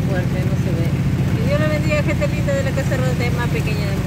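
Vehicle engine droning steadily inside the cab while driving, with voices talking over it from about one and a half seconds in.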